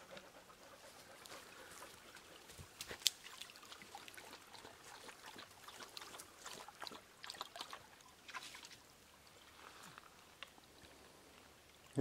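A dog lapping water from a shallow stream: quiet, irregular small splashes and slurps that thin out after about nine seconds.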